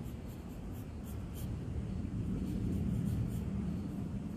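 Graphite pencil scratching on paper in short sketching strokes, over a steady low background hum.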